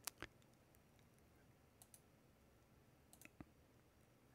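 Near silence: room tone broken by a few faint, short clicks, two close together at the very start, one a little before the middle and a few more late on.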